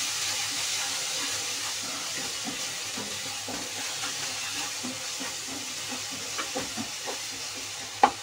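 Tomato and spice masala sizzling steadily in hot oil in a kadai while a wooden spatula stirs it, with light irregular scrapes and taps against the pan.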